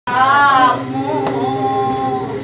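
Unaccompanied singing of a Greek song. A loud held note opens it and gives way after under a second to a softer, lower sung line.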